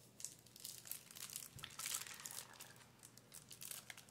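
Faint crinkling and rustling of gift packaging being handled, in short scattered crackles that are densest about two seconds in.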